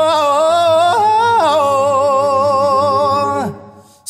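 Male singer humming a few slow held notes with vibrato, the pitch stepping down, up and down again, then fading out about three and a half seconds in.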